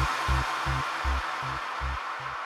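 Electronic dance track being faded down on a DJ mixer: a fast kick drum, about two and a half beats a second, grows weaker and the overall level falls, leaving a hiss.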